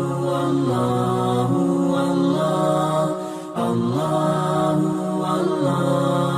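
Outro music of chanted, wordless-sounding vocals in long held notes that step slowly from pitch to pitch, with a brief dip about three and a half seconds in.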